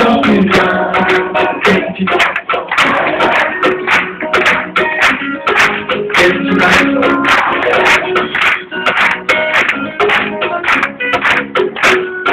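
Live band playing an instrumental passage with plucked acoustic guitar over dense, rhythmic percussion, with no singing. It is heard through a phone recording from the crowd.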